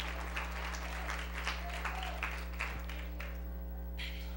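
Congregation applauding in praise, scattered hand claps that die away about three seconds in, over a steady electrical hum.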